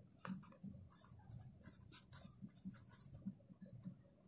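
A pen writing on notebook paper: faint, quick scratching strokes as a word is written out by hand.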